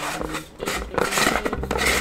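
A cylindrical battery storage container being pulled open, its fitted sections rubbing and scraping against each other in an irregular, rough friction sound.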